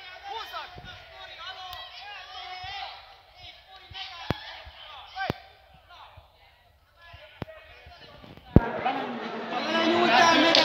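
Sharp slaps and thumps from grapplers on a wrestling mat, four spaced through the stretch, the last and loudest a deep thump near the end, over voices in a large hall that grow louder after it.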